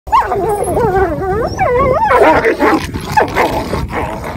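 A dog calls out in one long call that wavers up and down in pitch for about two seconds, then a person laughs over the continuing noisier animal sounds.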